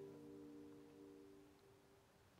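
The last chord of the carol's instrumental accompaniment ringing away: a few steady tones fade out over about a second and a half, leaving near silence.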